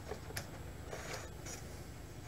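Faint rubbing of a household clothes iron pressed and slid along iron-on wood edge banding, with a couple of light ticks about a third of a second and a second and a half in.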